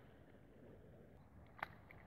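Near silence: faint outdoor background with a single faint click about one and a half seconds in.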